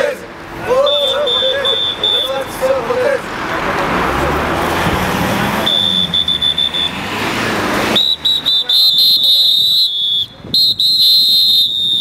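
Whistles blown in long, steady, shrill blasts by a protesting crowd, over the crowd's voices and shouting. A long blast early on and a short one in the middle, then near-constant whistling from about two-thirds of the way through.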